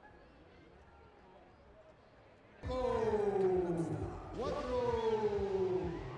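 Faint background murmur, then about two and a half seconds in a sudden loud voice calling out in long, drawn-out tones that each slide down in pitch.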